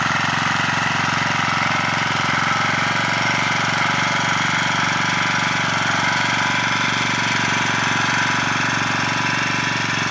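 Walk-behind power tiller's small engine running steadily under load as its rotary tines till the soil, with a fast, even firing beat.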